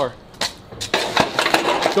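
A few sharp metallic clanks followed by about a second of dense metallic clattering and rattling.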